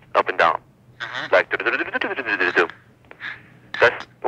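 Speech only: a voice talking over a telephone line, recorded on tape, in short phrases with brief pauses.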